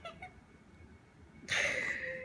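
Baby giving one high-pitched, breathy squeal about a second and a half in, after a quiet stretch.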